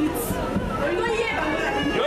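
Several people's voices speaking and calling out over one another.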